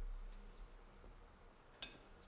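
Quiet room with a low rumble, like a bump, fading out over the first second, and a single sharp click near the end.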